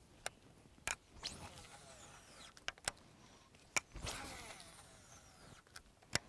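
Fishing tackle being worked: several sharp clicks and a faint whirr from a casting reel that falls in pitch about four seconds in.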